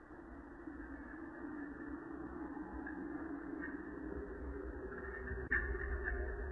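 A car approaching, its engine and tyre rumble growing steadily louder, heard through a security camera's low-quality microphone. A single sharp click comes about five and a half seconds in.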